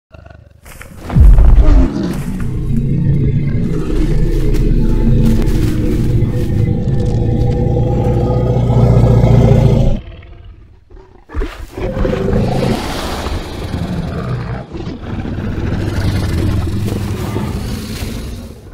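Film dinosaur roar and growl with orchestral score: a sudden loud hit about a second in, then a long, low, drawn-out creature roar that cuts off about ten seconds in, and a second stretch of creature sound and music after it.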